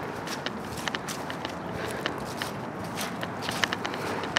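Footsteps of a person walking across a grassy yard, heard as a run of light, irregular crunches and clicks.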